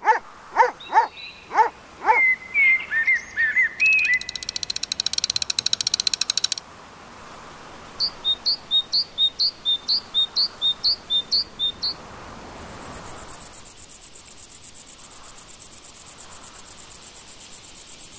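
Countryside ambience of birds and insects. A few quick falling whistles and chirps come first, then a rapid high buzzing trill. A run of about ten short, evenly spaced chirps follows, and from about two-thirds of the way in there is a steady, very high, fast-pulsing insect trill.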